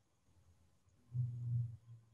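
Near silence broken about a second in by a short, low, steady hummed 'mm' from a man's voice, lasting about half a second.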